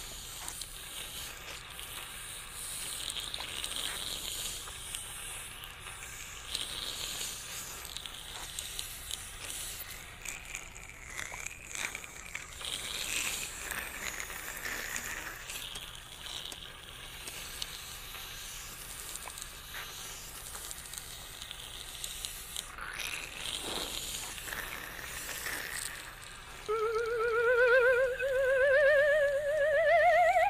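Dental saliva ejector sucking with a steady hissing, gurgling slurp, as a cartoon sound effect. Near the end a wavering, rising theremin-like tone starts.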